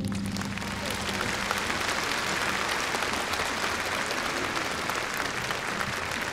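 A large concert-hall audience applauding steadily, while the orchestra's last low chord dies away in the first second.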